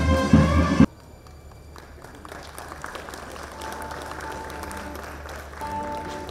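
Music that cuts off suddenly about a second in, followed by faint applause from a crowd, with soft held musical notes coming in about halfway through.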